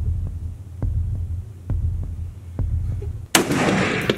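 Slow, low thuds about a second apart over a low hum, like a dramatic heartbeat effect. Then a single loud rifle shot about three seconds in, ringing out as it dies away.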